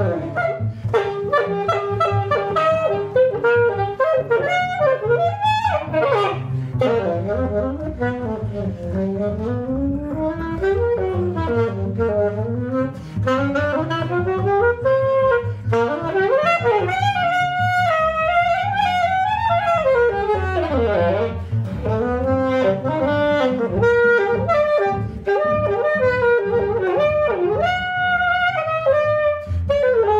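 Improvised jazz duo: a saxophone plays winding, gliding melodic lines over a plucked double bass walking through low notes.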